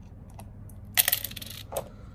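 Small plastic counters dropping into a plastic tub, a short clatter about a second in and a lighter click near the end.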